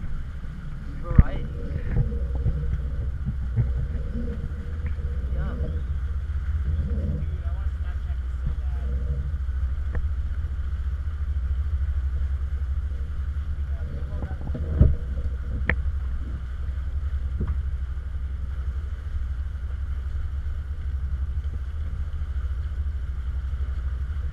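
Steady low rumble of a catamaran under way, with wind and water noise on a hull-mounted camera. Faint voices carry over it in the first several seconds and again briefly in the middle, and there are two sharp knocks, one about a second in and one midway.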